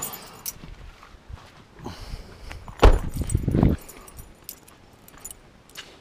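A bunch of car keys jangling, with a loud thump about three seconds in and light clinks of the keys after it.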